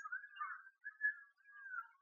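A faint, high-pitched tune in several short phrases.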